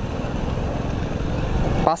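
Honda Biz's small single-cylinder four-stroke engine running steadily at low speed in a lower gear, mixed with wind and road noise. The sound stays even, with no sudden lurch after the downshift.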